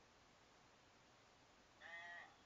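Near silence: room tone, with a brief, faint, thin voice near the end, the far party's reply heard over a phone line.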